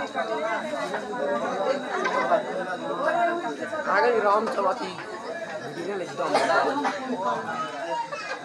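A group of people talking at once in continuous, overlapping chatter, with no single voice standing out.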